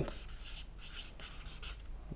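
Marker writing on flip-chart paper: a series of short, faint, scratchy strokes of the tip across the paper.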